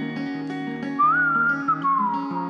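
Acoustic guitar fingerpicked with a capo, playing a repeating pattern of plucked notes; about a second in, a whistled melody comes in over it, one clear note that rises and then slides down.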